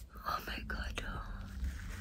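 A woman briefly whispering in a breathy, half-voiced way in the first second, followed by a low rumble of the phone being handled.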